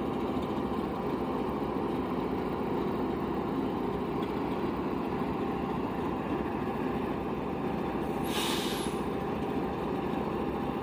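Freight train rolling through a grade crossing, its wheels running on the rails in a steady rumble. A brief sharp hiss cuts through about eight seconds in.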